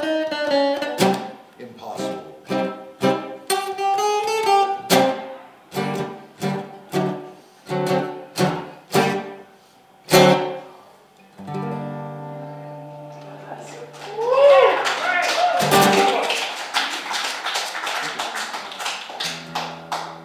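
Steel-string acoustic guitar strummed in a steady rhythm of about two chords a second, ending on one chord left to ring out. A few seconds before the end, voices and what sounds like a burst of clapping and cheering rise up.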